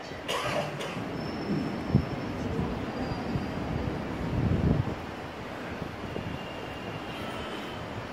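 Steady room noise of a hall with an open lecture microphone, with a short knock about two seconds in and a low swell of rumble around the middle.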